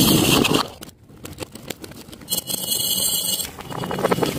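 Crinkling of a plastic candy bag and a clatter of light candy pieces dropping into a glass mason jar, with scattered clicks of pieces striking the glass.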